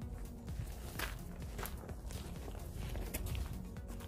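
Background music under a few rustling footsteps on dry fallen leaves.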